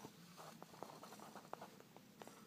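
Near silence: quiet room tone with a few faint, scattered clicks.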